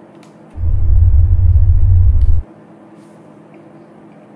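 A loud, deep bass rumble lasting about two seconds, starting abruptly about half a second in and cutting off suddenly.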